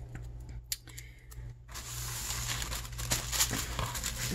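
Tissue paper rustling and crinkling as it is handled and folded, with a few light ticks at first and a steadier crackle from a little before halfway in.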